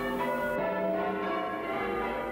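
Church tower bells being rung in changes: several bells strike in turn, their tones overlapping and sounding on into one another.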